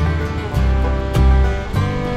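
Background music: a guitar-led track with a steady beat about every 0.6 seconds over a bass line.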